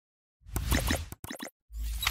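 Electronic intro music and sound effects with a heavy bass, starting about half a second in and coming in choppy pieces with two brief drop-outs.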